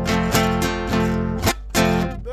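Guitar strummed in a down, mute, up pattern. Ringing chords are cut by sharp percussive strokes where the palm slaps and silences the strings, with a brief muted gap about one and a half seconds in before the next chord. After the strike, a four-finger rasgueado flick gives a rasping "jırt".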